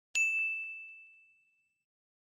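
A notification-bell chime sound effect: one clear high ding struck once just after the start, ringing on and fading away over about a second and a half.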